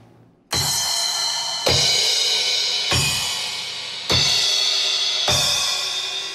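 Five cymbal crashes struck about every 1.2 seconds, each with a deep kick-drum thump fired along with it, the cymbal left ringing between hits. The kick is electronic: a mouth-operated trigger gates it whenever a cymbal is hit, and it plays through a subwoofer suspended inside the bass drum.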